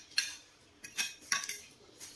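Metal spoon and fork scraping and clinking against a plate: four or five short, sharp strokes in quick succession.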